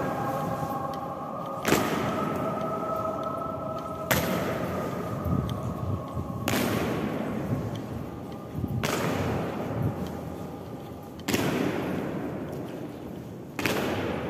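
Boots of an honour guard stamping on a stone floor in a slow, high-kicking ceremonial march: six loud, evenly spaced stamps about two and a half seconds apart, each ringing out with a long echo in a large stone hall. A faint tune fades out in the first few seconds.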